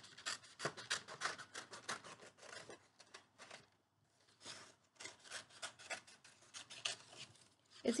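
Large scissors cutting a circle out of black construction paper: a fast, irregular run of snips with paper rustling, pausing briefly about halfway through.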